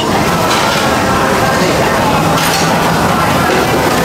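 Indistinct chatter of a busy food court, with a metal fork clinking and scraping on a ceramic plate.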